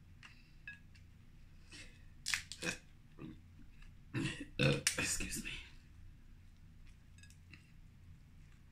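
A person burping, the loudest about four seconds in and lasting over a second, with shorter mouth and eating noises before it while pulling meat from king crab legs.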